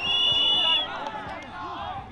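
Referee's whistle blown once at the start, a single steady high blast lasting just under a second, followed by people talking and calling out.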